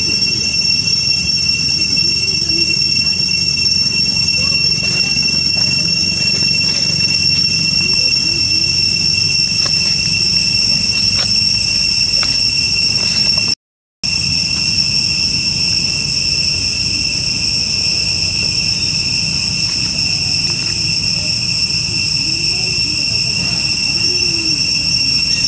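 Steady, high-pitched chorus of insects in the forest canopy, one constant shrill tone with a higher overtone. It cuts out for a split second about halfway through.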